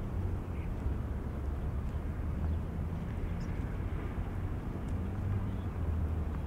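Outdoor city ambience: a steady low rumble of distant traffic, with no sudden sounds standing out.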